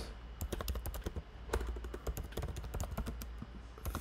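Typing on a computer keyboard: a fast, irregular run of key clicks as a text prompt is entered.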